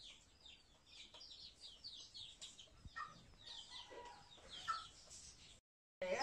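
Faint chickens: a steady run of short, high peeps, each falling in pitch and coming several a second, with a few lower clucks in the second half. The sound cuts off suddenly near the end.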